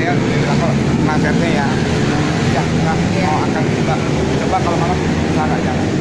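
A steady, loud low rumble of a motor running, with people talking over it.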